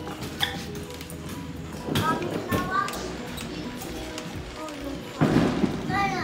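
Indistinct background voices of a family gathering, children among them, over music, with a heavy thud about five seconds in.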